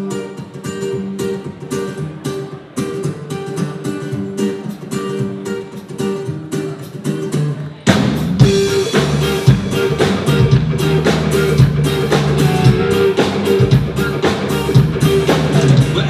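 Live rock band playing the instrumental opening of a song: strummed acoustic and electric guitars at first. About halfway through, the bass and drum kit come in and the music gets louder.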